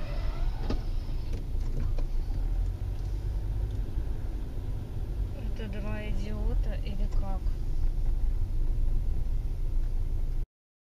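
Steady low rumble of a car on the move, with a few faint knocks and a brief voice about six seconds in.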